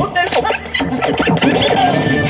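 DJ scratching: quick back-and-forth pitch sweeps cut over a playing music track.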